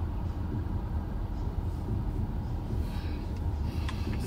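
Steady low rumble of a car's idling engine, heard from inside the cabin.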